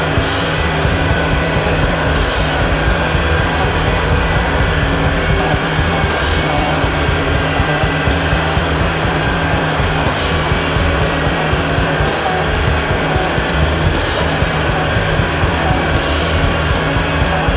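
Loud, dense noise-rock improvisation: a sustained wall of distorted sound over a steady low drone, with bright crashes about every two seconds.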